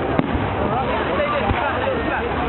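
Fireworks going off overhead, with a few sharp bangs, over the steady chatter of a crowd watching.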